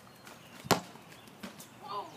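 A single sharp slap about two-thirds of a second in, followed by two fainter knocks and a brief voice-like sound near the end.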